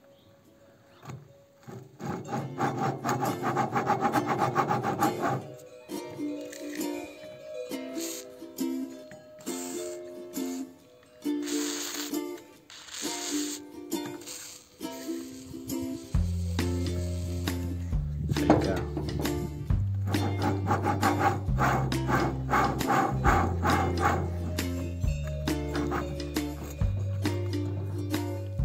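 A steel axle turned by hand in its freshly lubricated ball bearings, grating roughly for a few seconds near the start. Then two short hisses of WD-40 aerosol sprayed onto the bearing. Background music with a repeating melody plays throughout, and a bass line joins about halfway through.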